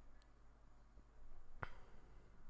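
Quiet room tone with a single sharp click a little past halfway through.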